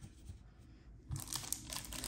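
Thin clear plastic crinkling as it is handled, starting about halfway through after a near-silent first second.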